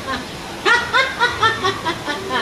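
High-pitched laughter: a run of six or seven short "ha" pulses, each dipping in pitch, starting a little over half a second in.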